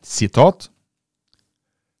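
A man's voice speaking for about half a second, then cut to dead silence for the rest.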